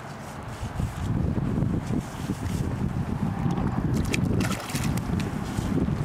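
Low, uneven rumble of wind buffeting the camera microphone, with a few brief sharp sounds in the second half.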